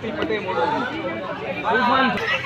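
Chatter of several men's voices talking over one another, with no single clear speaker.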